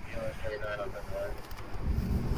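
Faint, distant talking over light outdoor background noise.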